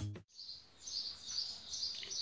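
Faint, high bird chirps repeating a few times a second, after a guitar music clip cuts off at the very start.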